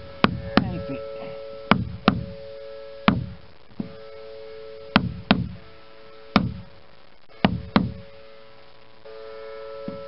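A caulking mallet striking a caulking iron, driving twisted fibre into the seam between the pine planks of a wooden boat hull. About eleven sharp knocks, many in quick pairs, stop near the end.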